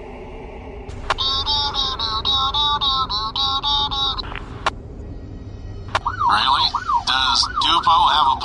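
Police two-way radio traffic: a transmission click about a second in, then a pulsing electronic tone at about five beeps a second for some three seconds, more clicks, and a warbling, garbled radio sound in the last two seconds.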